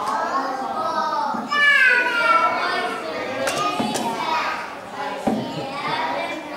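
Many young children's voices at once, loudest about two seconds in, with a few sharp knocks in the second half.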